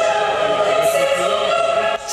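Music: one long, steady chord sung by choir-like voices, with no beat.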